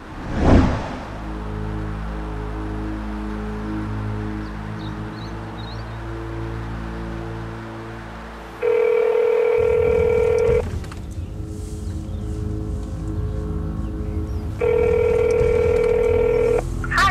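A swelling whoosh hit, then a low sustained music drone. Partway through, a telephone ringback tone sounds twice, each ring two seconds long and four seconds apart: an outgoing call ringing out unanswered.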